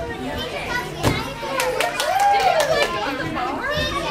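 Many children's voices and chatter fill a large gymnastics hall, with one child's high call about halfway through. A few sharp knocks come through the middle.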